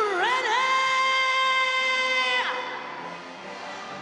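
A single voice sweeping up and then holding one long high note for about two seconds before dropping off, over music and crowd noise.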